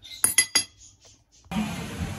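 A metal fork clinks three or four times against a ceramic plate. About a second and a half in, it cuts to background music with a steady beat.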